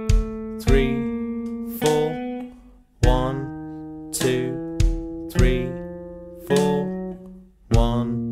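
Guitar strumming a slow chord accompaniment, roughly one strum a second, each chord ringing on until the next, with the chords changing as it goes.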